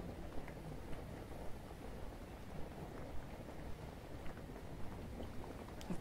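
Faint, steady rain heard from indoors, a low even wash with a few soft scattered ticks.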